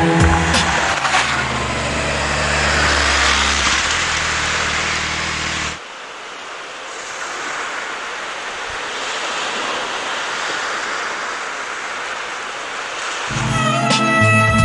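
Motorcycle engine running under a rushing, wind-like noise, cutting off abruptly about six seconds in. A thinner steady hiss is left, and music comes back in near the end.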